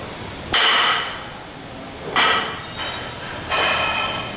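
Loaded barbell clanking three times, about a second and a half apart, with a short ring after each, as deadlift reps are lowered and pulled.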